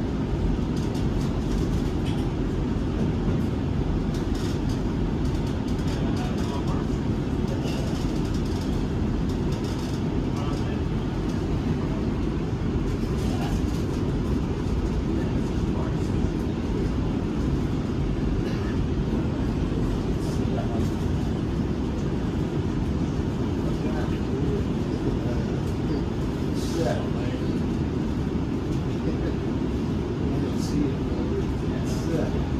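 LA Metro E Line light-rail train running at speed, heard from inside the car: a steady, unbroken low rumble of wheels on rails and traction motors.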